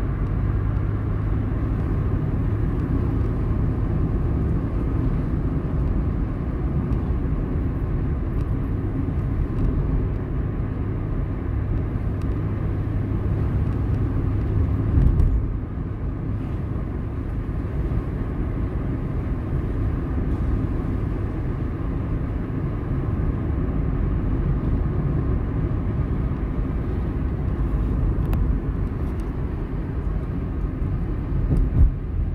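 Car driving along a road: steady engine and tyre rumble. The engine's low hum eases off about halfway through.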